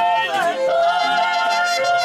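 Mariachi band performing: singers' voices glide into a long held note with slight wavering, over strummed guitars and a low bass line.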